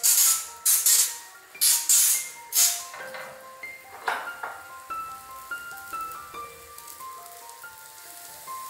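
Oil sizzling in several short bursts as it is brushed onto a dosa on a hot cast-iron tawa, loudest in the first three seconds with one more burst about four seconds in. Soft background music with a simple melody plays throughout.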